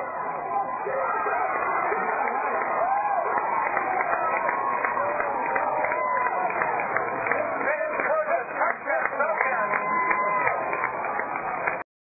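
Football crowd in the stands cheering and shouting, many voices yelling over one another, with one man's voice close by. The sound cuts off abruptly near the end.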